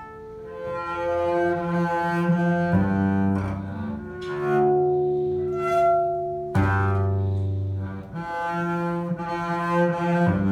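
Solo double bass played arco in a free-jazz improvisation: long bowed notes, each held for a couple of seconds before shifting pitch, with sharp fresh bow attacks about three and six and a half seconds in.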